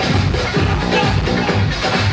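1990s flashback electronic dance music played loud over a DJ's sound system, with a steady bass-drum beat about two beats a second.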